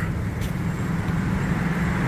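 Road traffic noise: a steady wash of passing vehicles with a low, even engine hum underneath.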